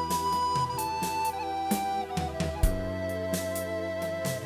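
Wooden recorder playing a slow melody over a backing track with bass and drums. It holds a high note for about a second, then steps down through a few notes to a lower held note.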